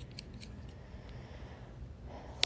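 Quiet room tone with a low steady hum, and a few faint light clicks in the first part.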